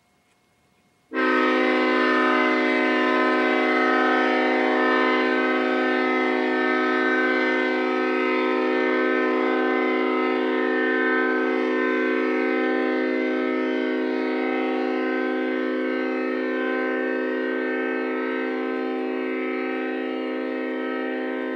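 Leslie S5T variable-orifice five-chime locomotive air horn blowing a steady chord. It starts suddenly about a second in when the valve is opened and is fed only from a 20-gallon air tank with no compressor running. It grows gradually quieter as the tank pressure falls from 120 PSI.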